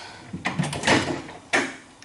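Microwave door being opened, with a few clunks and knocks about half a second, a second and a second and a half in.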